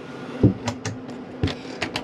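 Wooden motorhome kitchen cupboard doors being shut and handled: two dull knocks about a second apart, with several light clicks from the push-button catches.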